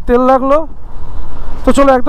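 A person's voice in short phrases, breaking off for about a second in the middle, with faint low road noise in the pause.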